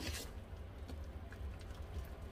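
Faint soft wet sounds and light ticks as a hand presses blended cauliflower pulp in a metal strainer, with a brief rustle right at the start.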